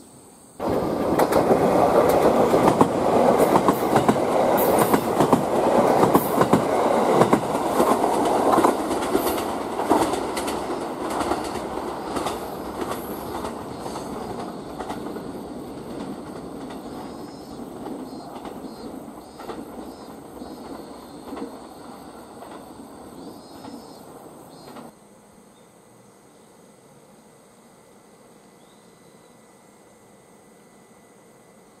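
Electric limited-express train passing through a station over a Y-shaped turnout, its wheels clattering over the points and rail joints. The sound is loud from about half a second in, grows slowly fainter, and cuts off abruptly near the end.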